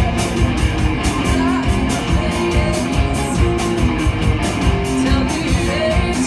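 A live rock band playing loud, with electric guitars over bass and drums keeping a steady beat.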